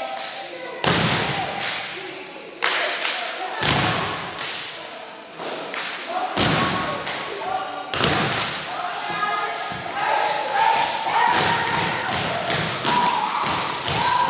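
Step team stomping boots on a hardwood gym floor and clapping in a rhythmic pattern of sharp strikes, with voices calling out over it and no music.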